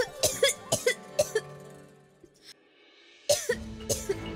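A young woman coughing hard, about six coughs in quick succession in the first second and a half, over background music that fades to near silence. The music comes back in loudly near the end.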